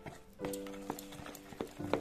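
A spoon stirring thick rice-flour and jaggery batter in a plastic bowl, giving a few sharp knocks against the bowl. Background music with long held notes plays underneath.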